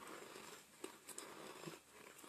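Faint chewing of a mouthful of powdery cornstarch: a few soft clicks and crunches, spaced about half a second apart.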